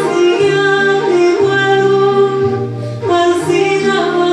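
Andean folk song played live: a woman sings long held notes over charango and guitar, with a guitar bass line moving about once a second.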